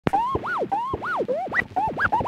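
Hip hop intro of a pitched sample scratched back and forth on a turntable. Its pitch sweeps up and down in repeated arcs, a few strokes a second, with no drums yet.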